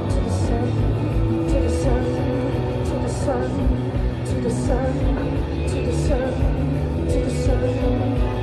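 Live post-punk rock band playing loud and fast: a steady drum beat with regular cymbal hits, heavy bass guitar and electric guitar, with a woman singing into the microphone over it.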